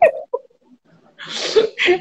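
A woman laughing: a sharp burst of laughter at the start, a short one just after, then a breathy laughing exhale before talk resumes near the end.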